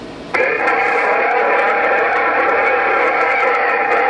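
HR2510 radio's speaker on CB channel 11 coming on suddenly about a third of a second in with a steady, narrow-band hiss and a held buzzing tone: another station's carrier keyed up with no voice on it.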